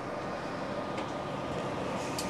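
Steady, even background hiss with one faint click about a second in.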